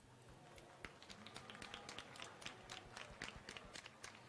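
Faint, scattered clapping from a small audience: a patter of separate claps that starts about a second in.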